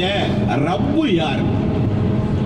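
A man's voice speaking in Tamil, with pauses, over the steady low rumble of a moving vehicle.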